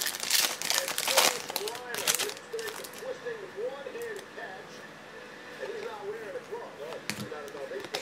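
A plastic trading-card pack wrapper, 2015-16 Panini Donruss basketball, is torn open and rustled in loud noisy bursts for about the first two seconds. Quieter handling of the cards follows.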